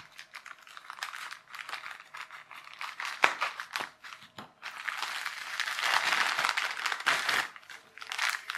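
Thin plastic postal bag crinkling and rustling as it is cut open and handled, with scattered sharp crackles. The crinkling grows denser and louder for a couple of seconds in the second half.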